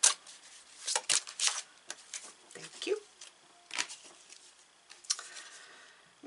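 A deck of oracle cards being shuffled and handled by hand: a quick run of short papery snaps and rustles in the first second and a half, then scattered softer ones as a card is drawn from the deck.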